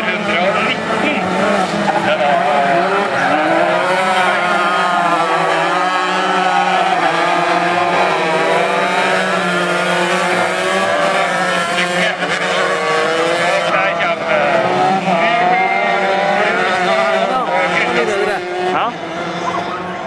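Several 125 cc crosskart engines racing, their pitches rising and falling out of step as the karts rev up and back off through the corners, over a steady low hum.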